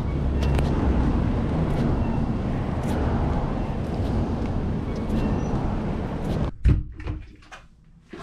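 Steady rumbling wind noise on a head-mounted action camera's microphone while walking outdoors. About six and a half seconds in it cuts off, followed by a sharp thump and a few light knocks in a quiet room.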